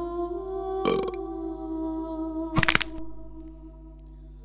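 A dubbed cartoon burp, then about a second and a half later a short bonk sound effect, over sustained background music tones.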